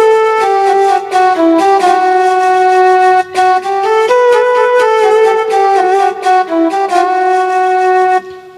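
Electronic keyboard on its flute voice, playing a single-note melody of held notes stepping up and down, with a short break a little past three seconds in.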